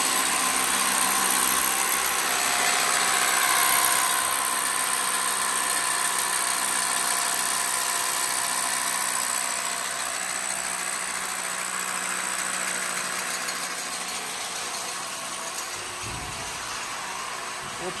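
Corded hammer drill boring into a concrete floor to anchor the base plate of a two-post car lift: a steady hammering drone, loudest in the first few seconds and somewhat quieter after.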